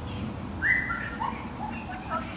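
A short high-pitched squeal, stepping down slightly in pitch, about half a second in, followed by a few fainter, lower cries, from a girl being sprayed with a garden hose. Under it runs the faint steady hiss of the hose spray.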